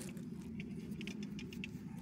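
Light, irregular clicks and taps, several a second, as a rigid PVC pipe is handled and moved against the trellis, over a steady low hum.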